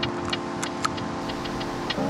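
Small, irregular mechanical clicks from a Leica M6 35 mm film camera being handled as film is loaded, over a steady held tone that stops just before the end.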